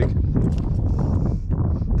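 Wind buffeting an unprotected action-camera microphone: a steady low rumble with no speech over it.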